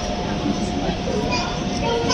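Busy restaurant din: indistinct chatter of many diners over a steady background noise, with a thin steady tone running underneath.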